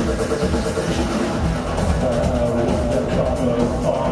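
Live EBM / dark electro band playing loud electronic music with a steady beat.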